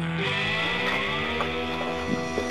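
Intro music: sustained guitar chords, with several tones gliding upward about a quarter second in.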